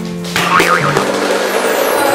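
Hollow plastic bowling pins clattering as a ball knocks them over, about half a second in, with a brief wavering high sound just after and background music throughout.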